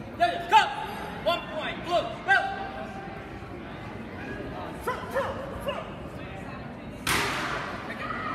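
Short shouts from people around a martial-arts sparring ring, in bursts early on and again midway. About seven seconds in comes a sudden loud thud.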